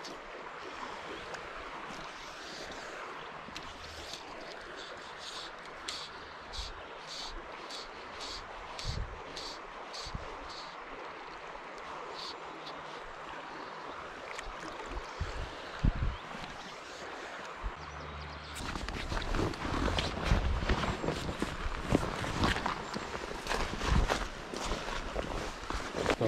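Steady rush of flowing river water with a regular run of faint high ticks. About eighteen seconds in, it changes abruptly to louder footsteps and rustling as someone walks through thick bankside vegetation.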